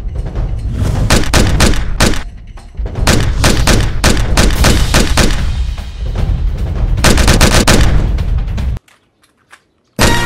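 Gunfire sound effects in rapid volleys of shots over a heavy music track. About nine seconds in, everything cuts off to near silence.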